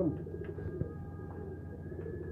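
Domestic pigeons cooing, a low wavering coo near the start followed by softer ones.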